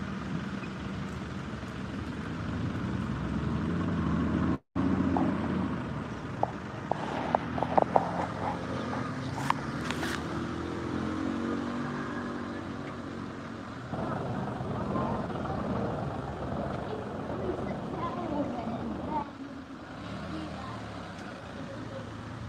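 Car engines running close by in street traffic, a steady low hum, with indistinct voices in the background and a few short clicks about seven to ten seconds in.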